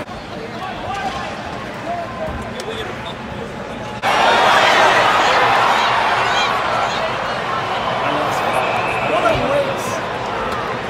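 Hockey arena crowd noise heard from rinkside, a dense mix of many voices, with scattered knocks of sticks and puck against the boards and glass. The crowd noise jumps abruptly louder about four seconds in.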